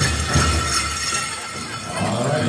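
Powwow drum beating a steady pulse, about three beats a second, under the dense jingling of bells and metal cones on dancers' regalia. The drumbeats weaken about a second in while the jingling carries on.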